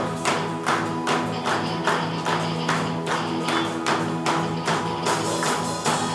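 Live band playing an upbeat song: drum kit, electric and bass guitars and keyboard, with held chords under a sharp beat about twice a second.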